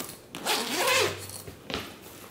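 Zipper on a black fabric camera backpack pulled open in one stroke, followed by a brief click near the end.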